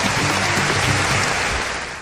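A large audience applauding, with a background music bed underneath; the applause fades out near the end.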